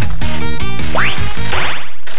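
Game music of a Daiichi CR Osomatsu-kun pachinko machine as its digit reels spin in high-probability (kakuhen) mode: a looping electronic tune. A quick rising cartoon sound effect comes about halfway through.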